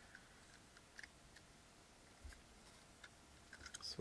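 Near silence, with a few faint clicks of thin plastic toy housing pieces being handled, about a second in and again near the end, and one soft thump a little past the middle.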